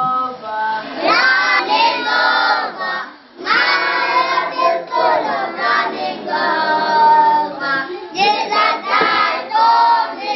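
A group of children singing a song together, with a short break about three seconds in.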